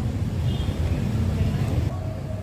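Steady low background rumble of outdoor ambient noise, with a few faint indistinct sounds above it.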